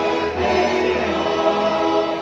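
A mixed choir singing in parts, holding sustained chords.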